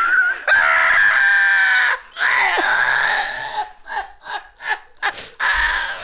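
Men laughing hard at a podcast microphone: long high-pitched shrieking laughs, then shorter bursts of laughter about three a second, rising into one more long shriek near the end.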